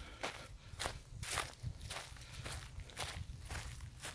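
Footsteps of a person walking over grass and dry leaf litter, short regular steps at about two to three a second.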